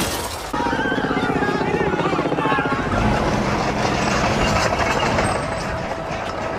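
The tail of an explosion blast shattering window glass in the first half second, followed by people shouting and screaming.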